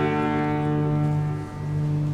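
Solo cello holding a long, low note. The note breaks off briefly about a second and a half in, then sounds again.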